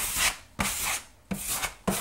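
Drywall knife scraping water-based wood filler across a sanded hardwood floor, about four short scraping strokes with brief pauses between them, pressing filler into nail holes and wiping off the excess.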